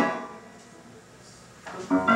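Live band accompaniment between sung lines: the last note and chord fade out over the first half second, a quiet lull with a faint ringing note follows, and the band comes back in near the end.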